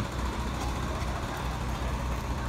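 A steady low engine rumble over a faint even hiss, with no sudden events.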